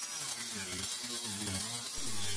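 Handheld power tool grinding away fiberglass laminate on a boat stringer, a steady grinding sound.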